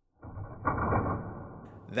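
Spring-loaded plastic wings of a 1990 Kenner Batjet toy swinging out when its button is pressed. The spring mechanism gives a muffled rush of plastic noise lasting about a second and a half, strongest near the start.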